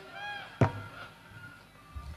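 A single sharp knock a little over half a second in, over faint wavering pitched tones, with a thin steady tone after it.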